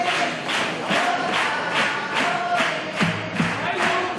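Carnival murga music: a steady drum-and-cymbal beat, about two and a half beats a second, under a held melody with group voices.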